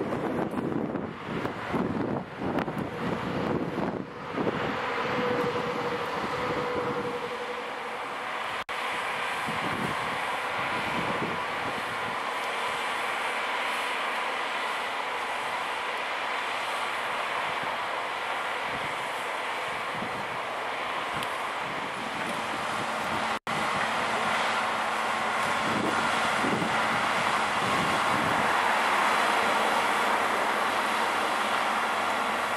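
Wind buffeting the microphone in gusts for the first several seconds. Then a steady, even running noise from a diesel rail overhead-line maintenance vehicle's engine and machinery while it stands with its work platform and crane in use.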